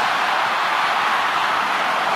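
Large stadium crowd cheering as one steady, loud wash of noise while the home side attacks near the try line.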